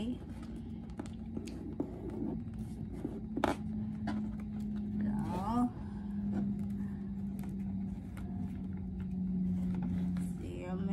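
A woman humming low, long-held notes that change pitch a few times, with a short rising vocal sound about halfway through. Under it, kraft paper and burlap rustle and tap on the table as they are lifted and pressed down.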